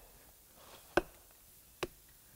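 Two sharp knocks, a tomahawk striking the trunk of a dead tree, the first about a second in and the second just under a second later. The strikes test the wood by ear: this tree still holds moisture and is softer than a dry, hardened barkless one.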